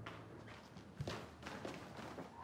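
Faint, soft footsteps of a person walking across the floor: a handful of light, irregular steps. A low music tone fades out in the first half second.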